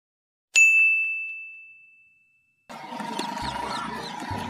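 A single bell-like ding sound effect: a sharp, bright tone that rings out and fades away over about a second and a half. Near the end it gives way to outdoor background noise.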